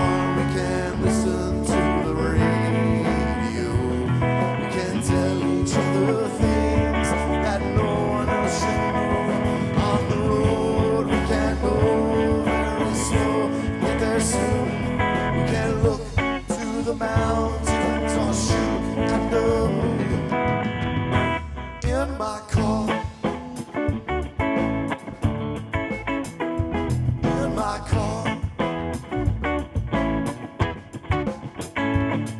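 Live rock band playing an instrumental passage on electric guitar, bass guitar and drums, with no singing. About two-thirds of the way through, the playing thins out and gets sparser.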